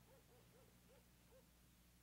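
Near silence: faint room tone with a low hum, and soft, short pitched calls repeated irregularly, several a second.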